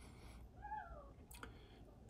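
Near silence broken by one faint, short cat meow about half a second in, rising and then falling in pitch, with a light click just after.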